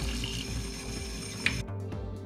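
Kitchen faucet running a thin stream of water into a stainless steel sink over rinsed cockle meat, cutting off suddenly about one and a half seconds in.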